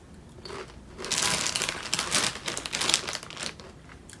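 Doritos tortilla chips being bitten and chewed: a run of loud, crisp crunching that lasts about two and a half seconds, starting about a second in.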